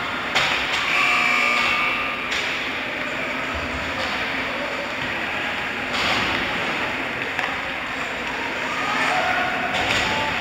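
Ice rink game ambience: a steady noisy hum under distant shouting and chatter of players and spectators, echoing in the arena. A sharp knock comes shortly after the start.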